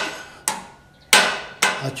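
Small hand hammer striking a copper sheet laid over a steel rail anvil: three blows, each with a short metallic ring.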